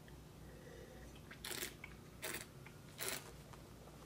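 Three short, faint mouth sounds of wine tasting, about a second apart.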